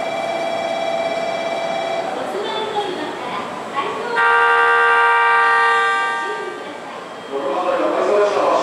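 The 36ぷらす3 train's horn sounds once about four seconds in, a loud steady tone of about two seconds that starts suddenly and fades out. Before it, a quieter steady tone is heard for about two seconds, with voices on the platform throughout.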